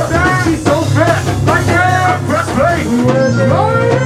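A go-go band playing live in rehearsal: voices singing and chanting into microphones over drums and a steady bass line.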